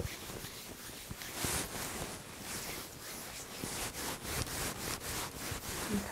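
Hands rubbing briskly over the skin of a person's back to warm it up, in repeated strokes a few times a second.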